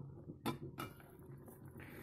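A few faint clicks and knocks as a pot lid is handled and lifted off a pot of simmering soup.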